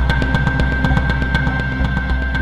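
Music track with a fast, steady drum beat over a deep bass and a held high note.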